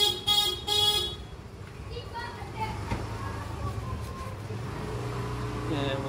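A vehicle horn honks in a few quick blasts, stopping about a second in, followed by a low steady traffic rumble.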